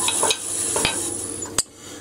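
Wood lathe spinning an oak block with no tool cutting: a steady motor whine with a high whistle, with a few light clicks. About a second and a half in there is a sharper click and the whine stops.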